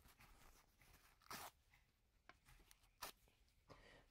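Faint tearing of thin white paper by hand into small pieces, with two brief, slightly louder rips, about a third of the way in and about three seconds in.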